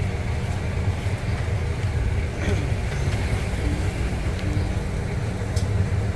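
A steady low rumble with a hum running under it, and faint voices now and then in the background.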